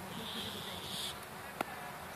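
A high buzz lasting about a second, as of an insect, over steady outdoor background noise, followed by a single sharp click near the end.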